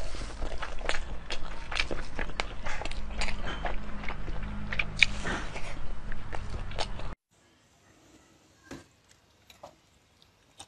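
Close-miked eating sounds: chewing and lip smacking with many sharp mouth clicks over a low hum. These cut off abruptly about seven seconds in, leaving fainter, sparser chewing clicks.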